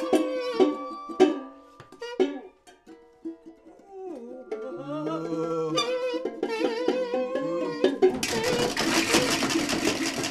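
Music on homemade instruments. Plucked string notes die away in the first two seconds, then a wavering, gliding tone and more plucked notes follow. About eight seconds in the sound changes abruptly to a denser, noisier mix.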